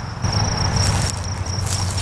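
An insect in the grass trilling, a steady high pulsing buzz, over a low steady rumble.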